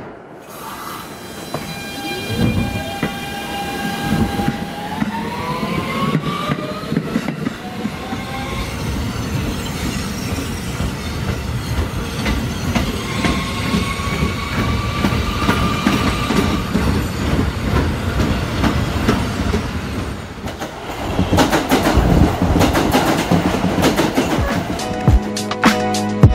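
Electric subway train pulling away. A motor whine rises in pitch over the first few seconds, then the train runs along the rails with steady wheel noise and a second rising whine partway through. Near the end comes a louder stretch of rail clatter.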